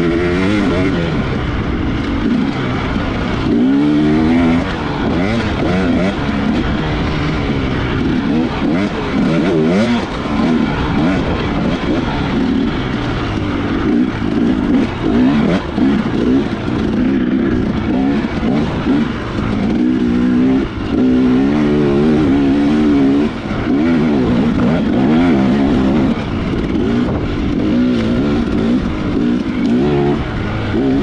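2018 Husqvarna TX300 two-stroke single-cylinder dirt bike engine under hard riding, revving up and down continually through the throttle and gear changes, its pitch rising and falling every second or two.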